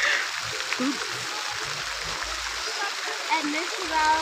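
Steady wash of water noise with faint distant voices in the background.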